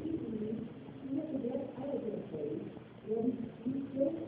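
A person speaking indistinctly, muffled and thin, as on a low-quality lecture recording, with no clear words.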